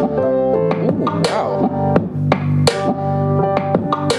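A song with guitar, bass and drums playing through a pair of Nylavee SK400 USB-powered desktop computer speakers, at a loud, steady level.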